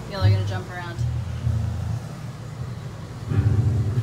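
Brief bits of a child's voice over low rumbling handling noise from a phone held and moved about at close range.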